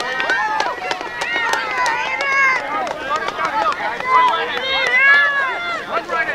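Several voices shouting and calling out over one another, short rising-and-falling yells that overlap throughout, with sharp clicks scattered among them.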